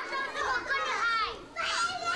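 A group of young children chattering and calling out at once, their high-pitched voices overlapping, with a brief lull at about a second and a half in.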